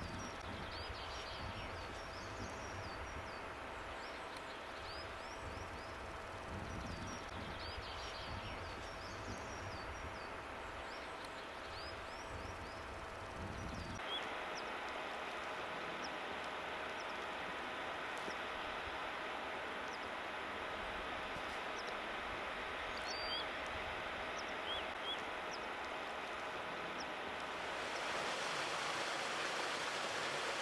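Faint countryside ambience: small birds chirping over a low rumble, then, after a cut about halfway through, a steady hiss with a few more chirps. Near the end the hiss grows louder as the rushing water of a beck comes in.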